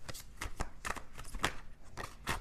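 A deck of tarot cards being shuffled by hand: about six quick, papery swishes and taps, unevenly spaced.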